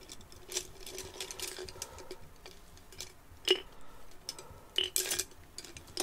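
Paintbrush handles clicking and rattling against one another and their cup as a bunch of brushes is sorted through by hand: scattered light clicks, with a few louder knocks in the second half.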